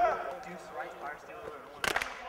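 Faint background voices, with one sharp smack near the end.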